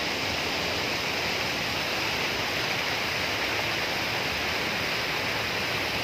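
Jaldhaka River rapids rushing over a boulder-strewn bed: a steady, even rush of white water.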